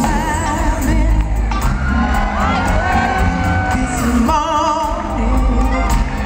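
Live soul band playing a slow song, with a woman singing held notes with vibrato over a strong bass line.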